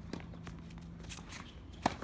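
Tennis rally on a hard court: light footsteps and shoe scuffs, then a single sharp knock of the tennis ball near the end.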